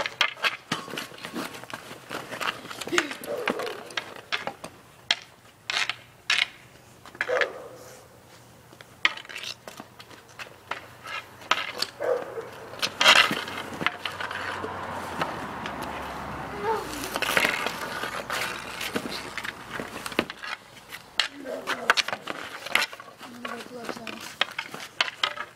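Hockey stick and puck or ball on pavement: irregular sharp clacks of stick strikes and shots, with a stretch of rougher scraping and stickhandling in the middle.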